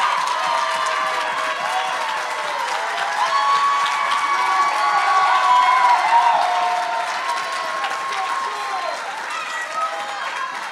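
Church congregation applauding and cheering, with many voices calling out and whooping over the clapping, easing off near the end.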